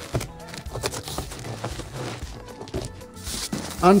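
Cardboard shipping box being handled, its flaps opened and folded back with scattered light knocks and scrapes of cardboard, over soft background music.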